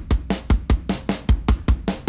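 Programmed drum-kit groove from a Groove Agent preset playing a fast, busy pattern of kick, snare and hi-hat hits. It runs through oeksound Bloom with the amount being raised into the squash range, where the plugin adds frequency-dependent compression to the drums.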